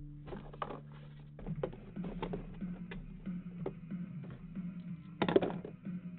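Sealed cardboard trading-card boxes being handled and pulled from a case: irregular light clicks and knocks, with faint background music under them and a brief louder sound about five seconds in.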